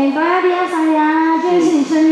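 A woman's high voice singing long, drawn-out notes through a stage PA system.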